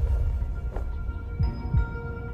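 Tense suspense underscore: a low sustained drone with faint held tones, pulsed by a heartbeat-like double thump about one and a half seconds in.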